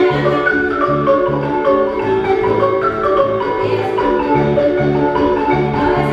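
Marimba music with a repeating bass line and runs of notes that step down in pitch.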